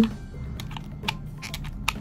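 Irregular light clicks from a hot glue gun as its trigger is squeezed and glue is laid onto a mirror panel, over a low steady hum.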